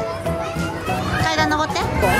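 Children's high voices and play noise, with music playing in the background.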